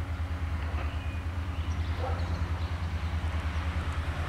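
Low, steady throbbing rumble of an approaching CFR class 65 'GM' diesel-electric locomotive, still some way off.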